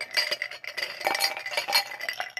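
Glass drinking tumblers being handled and knocked together, a rapid run of clinks with a bright ringing after them.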